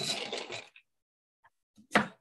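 Hazelnut halves rattling and scraping on a baking tray, followed near the end by a single sharp clunk.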